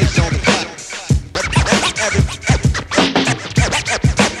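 A hip-hop track's instrumental break: a steady drum beat with turntable scratching cut back and forth over it.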